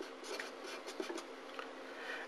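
Marker pen writing on paper: faint, short scratchy strokes of the nib as words and a fraction are written.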